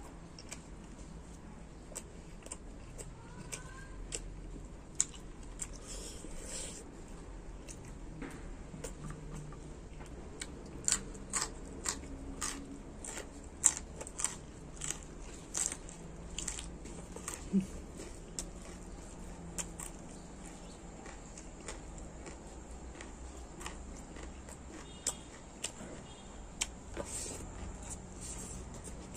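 Close-up mouth sounds of a man chewing smoked dry pork and rice: wet smacking clicks, thickest through the middle, fewer towards the end.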